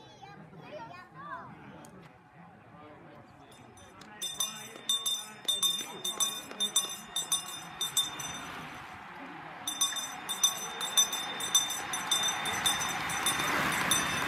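A bell rung rapidly and repeatedly, about three to four clangs a second, starting a few seconds in, pausing briefly, then ringing again. A rising rush of noise from the approaching bunch of riders and voices builds near the end.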